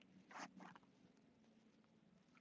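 Near silence: quiet studio room tone with a faint steady low hum. About half a second in comes a brief rustle, one stronger and one weaker in quick succession, from a movement close to the microphone.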